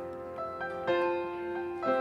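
Piano playing slow, sustained notes, a new note or chord coming in about every half second.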